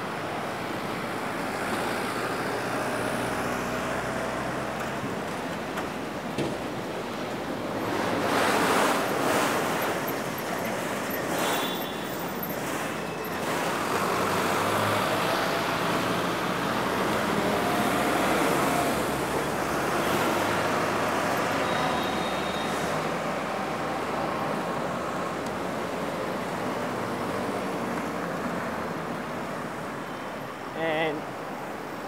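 City street traffic heard from a moving bicycle: a steady wash of car engines and tyre noise, swelling louder for a couple of seconds about eight seconds in.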